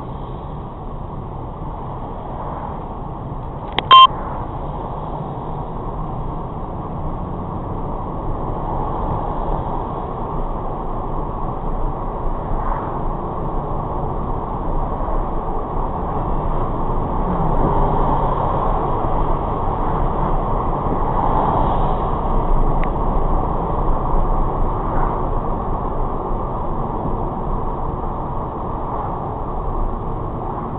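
Steady road and engine noise of a car driving at speed, heard from inside the cabin, growing louder for several seconds in the middle. A short, very loud beep sounds once about four seconds in.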